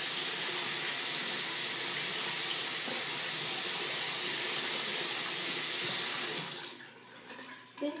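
Bathroom sink faucet running in a steady stream, water splashing over hands into the basin. It is shut off about six and a half seconds in.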